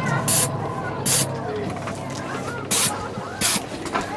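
Short sharp hisses of air, four of them spaced about a second apart, from a haunted-house air-blast scare effect.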